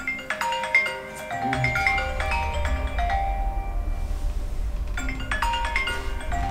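Smartphone ringing with a marimba-like ringtone: a melody of short, bright notes that starts at the beginning and repeats about five seconds in.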